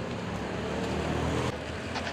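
Street traffic noise: a steady rumble of vehicle engines and tyres on the road.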